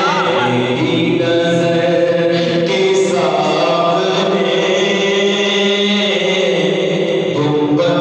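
A man singing a naat, an Urdu devotional poem, into a handheld microphone. He holds long sustained notes that shift pitch a few times.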